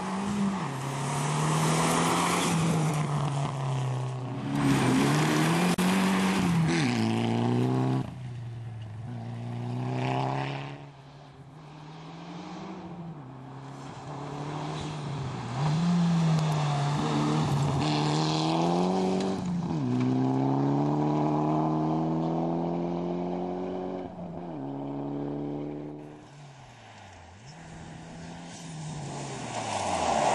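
Rally car engine at full throttle on a gravel stage, its pitch climbing and then dropping sharply again and again as it shifts through the gears. It grows louder and fainter over several passes.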